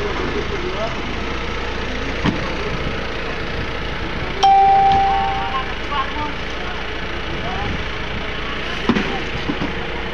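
A steady machine hum runs throughout. About four seconds in, a single sharp metallic clang rings out and fades over about a second.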